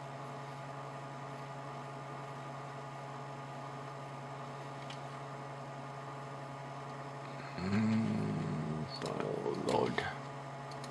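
A steady low electrical hum runs throughout. Near the end a man hums one held note for about a second, then briefly mutters.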